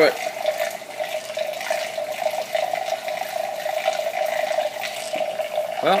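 Stir-Plate 3000 magnetic stirrer running at full speed: a steady hum with the rushing, swirling sound of water spun into a deep vortex in a glass jar. The stir bar is still holding on at this speed and has not been thrown.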